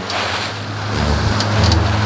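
Wind on the microphone and choppy sea water around a small boat, over a low steady rumble.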